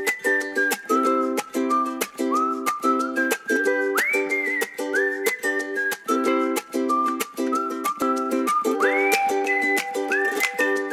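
Upbeat background music: a whistled melody over strummed chords with a steady beat, the whistle sliding up to a high note twice.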